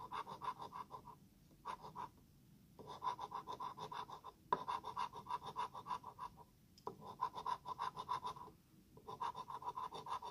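A coin scratching the coating off a lottery scratch-off ticket in quick back-and-forth strokes, several a second, in runs broken by brief pauses.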